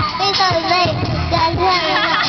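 Children singing karaoke over a music backing track.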